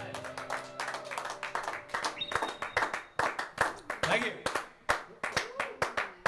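A band's final chord rings out and fades, then a few people clap unevenly, with voices calling out among the claps.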